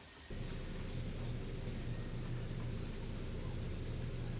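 A steady low rumbling noise that starts abruptly about a third of a second in and holds without a break.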